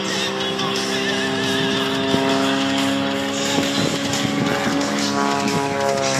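A propeller aerobatic plane's engine droning steadily overhead, mixed with music, with sustained tones that shift about five seconds in.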